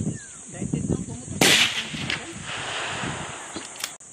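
A single suppressed sniper rifle shot about a second and a half in: a sharp crack with an echo trailing off over about two seconds. Insects buzz steadily throughout.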